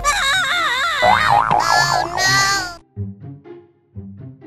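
Comic wobbling sound effect: a tone that bends quickly up and down in pitch, wobbling faster toward the end, then cuts off suddenly under three seconds in. Quieter music follows.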